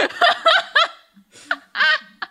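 A person laughing: a quick run of short chuckles in the first second, then a brief voiced sound near the end.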